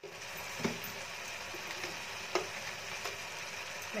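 Chopped spring onions and spices frying in oil in a kadhai: a steady sizzle, with a few short clicks.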